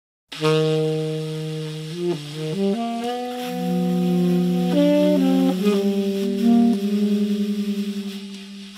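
Instrumental music: saxophones playing long held notes in close harmony, starting abruptly after silence and moving to a new chord every second or so. Near the end the lowest note pulses rapidly.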